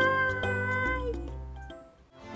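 A long meow held on one pitch and dipping at its end, over background music. The music fades out near the end.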